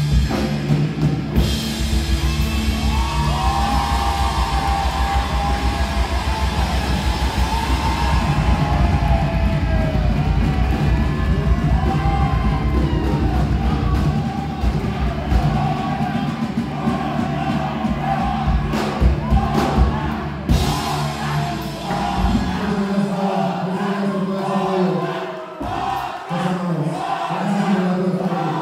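Live rock band playing: drums, bass and electric guitars under a man singing, heard from the audience. Late in the stretch the band's heavy low end drops out, leaving voices and crowd shouting.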